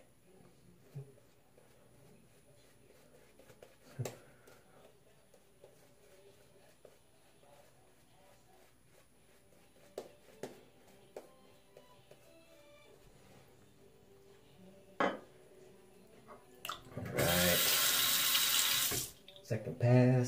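Mostly quiet with a few faint clicks, then a bathroom sink tap runs hard for about two seconds near the end.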